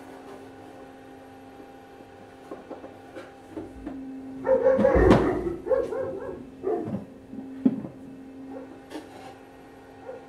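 Dogs barking: a loud flurry of barks about halfway through, then a couple of single barks. The owner thinks they are most likely barking at the local fox.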